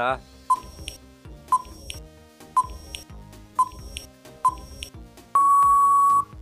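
Quiz countdown timer sound effect: five short beeps about a second apart, then a long, loud steady beep signalling time out, over background music.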